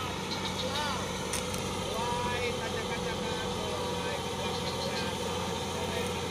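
Mitsubishi Fuso diesel truck engine running with a steady low drone.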